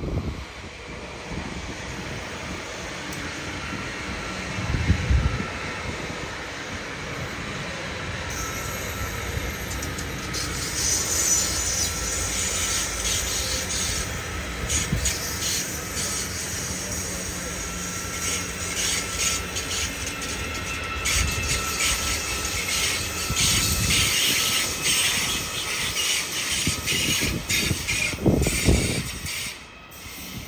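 An ICE electric high-speed train approaches and rolls past: a steady rumble of wheels on rail that builds over the first ten seconds, then a continuous clatter and crackle as the carriages pass, with a faint high whine early in the pass. Low gusts of wind buffet the microphone about five seconds in and again near the end.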